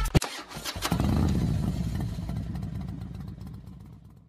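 Motorcycle engine sound effect: a sharp click, then the engine starts about half a second in and runs low and steady, fading out gradually.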